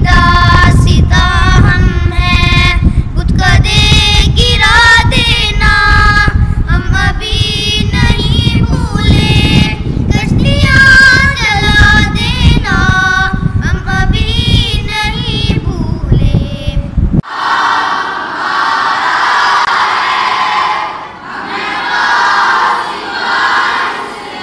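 Two boys singing an Urdu Islamic tarana unaccompanied, over a loud low rumble. About 17 seconds in the sound cuts abruptly to a group of boys' voices singing together, smeared by the echo of a large hall.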